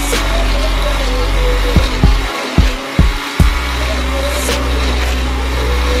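Electric blender running, a loud steady whirring noise, with background music playing over it and a few short thumps about halfway through.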